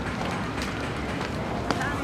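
Footsteps of several people walking on a dirt path, over a steady outdoor background hiss.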